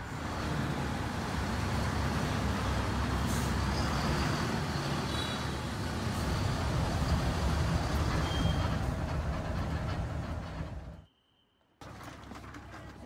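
Inside a moving coach bus: steady engine and road noise, mostly a low rumble. The sound cuts off abruptly about a second before the end.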